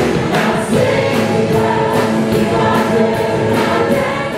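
Church congregation singing a hymn together, men's and women's voices, over instrumental accompaniment with a steady beat.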